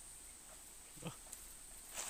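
Faint, steady, high-pitched insect drone in tropical forest, with one short voiced "oh" about a second in.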